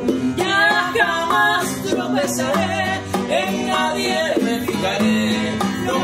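Live acoustic music: a woman singing a Spanish-language ballad, accompanied by a strummed and picked acoustic guitar and hand-played bongos.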